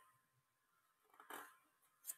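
Near silence, with one faint, brief sound a little past the middle.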